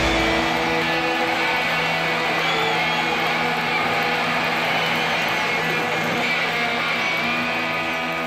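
Live rock band's electric guitars through amplifiers holding sustained, ringing notes and chords without drums, steady in level.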